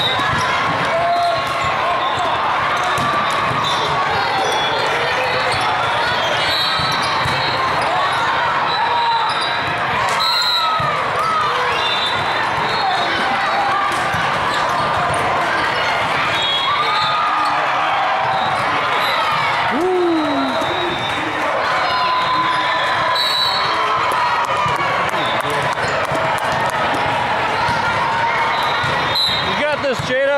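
Din of a crowded indoor volleyball tournament hall: many indistinct overlapping voices of players and spectators, with volleyballs being hit and bouncing on the court floor.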